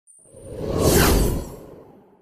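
Logo-sting whoosh sound effect that swells to a peak about a second in and then fades away, with deep low rumble under it and a thin high tone at the very start.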